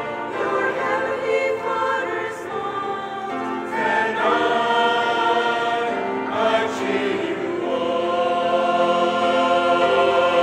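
Mixed church choir of men and women singing an anthem in parts, many notes held long.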